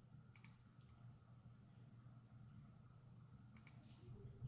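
Near silence with two computer mouse clicks, one about a third of a second in and another near the end, over a faint steady hum.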